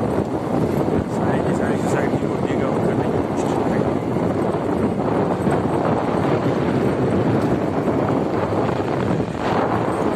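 Steady noise of a vehicle driving along an unpaved dirt and gravel road: engine and tyres on the loose surface, unbroken.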